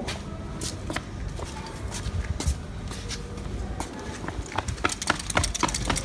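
Footsteps on tiled paving, a string of irregular light taps, over a steady low rumble.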